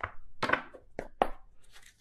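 A tarot deck being handled: several short, dry taps and scrapes of cards, spaced through the two seconds.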